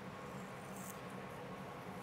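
Faint steady room tone with a low hum, and no distinct sound rising above it.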